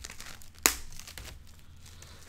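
Plastic wrapping crinkling under hands handling a wrapped Lego baseplate section, with one sharp click a little over half a second in.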